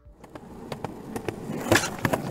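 Skateboard sound effect: wheels rolling on hard ground with a series of sharp clacks, growing louder.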